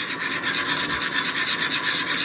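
Continuous rasping scrape of a plastic measuring cup being worked against a ceramic bowl as thick rice pudding is scraped out into beaten egg.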